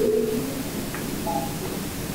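Steady hiss of an open audio line, with the tail of a voice fading out at the very start.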